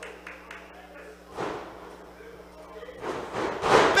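Wrestlers thudding onto the ring canvas: a softer impact about a second and a half in, and a louder, longer rush near the end as an arm drag takes one wrestler down.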